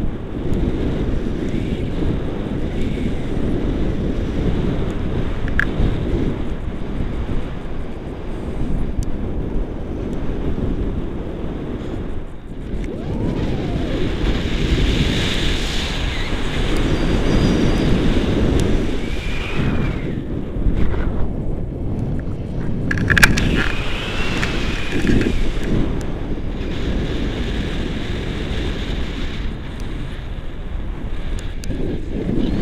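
Airflow buffeting the camera microphone of a tandem paraglider in flight: a steady, low, gusting rush, with a brief sharp knock about two-thirds of the way through.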